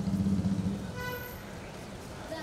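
Street traffic: a low vehicle rumble, then a short single car horn toot about a second in.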